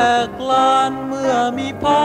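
A song: a sung melody moving in held notes over steady instrumental backing.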